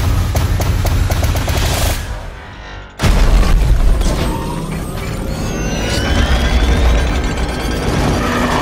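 Film-trailer score and sound design: a run of percussive hits speeding up under a rising swell, a second of near-hush, then a heavy boom about three seconds in, followed by deep rumbling and rising whooshes.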